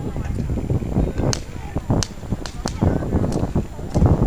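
Irregular sharp clicks and taps of the sled's hand-held ice poles striking the river ice, over a low steady rumble.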